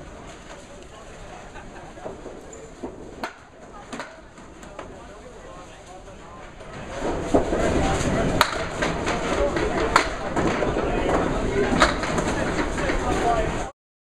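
Candlepin bowling alley sounds: sharp clacks of balls and pins over a general din of the lanes and voices, which grows louder about halfway through and cuts off just before the end.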